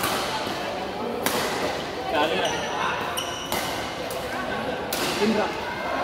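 Badminton rackets striking a shuttlecock in a fast rally, about four sharp hits a second or two apart, echoing in a large hall.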